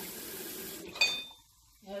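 Kitchen tap running steadily and shut off just under a second in, followed by a single ringing clink of metal kitchenware.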